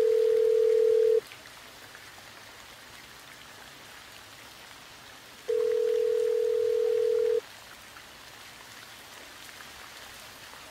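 Telephone ringing tone: a steady, low, single electronic tone that stops about a second in, then sounds again for about two seconds from about five and a half seconds in. The cadence is two seconds on, four seconds off.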